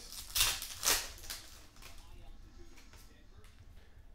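Cardboard hockey cards sliding against one another as a stack is handled: two brief swishes about half a second apart near the start, then fainter card handling.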